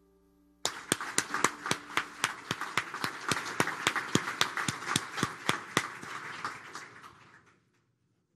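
Audience applauding, starting suddenly a little over half a second in and dying away near the end.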